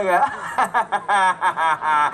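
A man's voice through a stage microphone laughing in a rapid string of short chuckles, about five a second.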